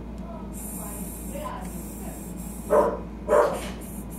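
A dog barking twice, two short barks about two-thirds of a second apart near the end.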